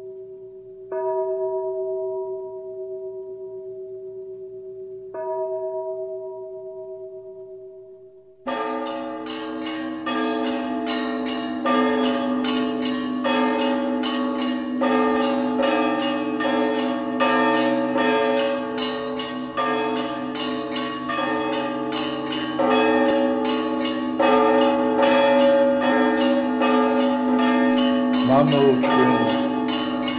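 Church bells ringing: two single strokes are each left to ring out, then from about eight seconds in several bells sound together in a rapid, continuous peal. A voice comes in near the end.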